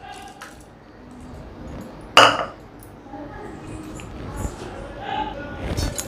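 Diced carrots tipped from a bowl into water in a pressure cooker, splashing faintly, with one sharp clink against the pot about two seconds in.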